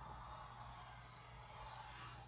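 Faint, steady scraping of a bone folder drawn along the score line in a sheet of cardstock on a scoring board, deepening the crease.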